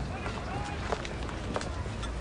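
Outdoor urban ambience: footsteps on a paved path at an irregular pace, background voices without clear words, and a steady low rumble like distant traffic.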